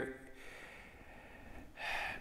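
A man's pause in speech with a short, sharp intake of breath near the end.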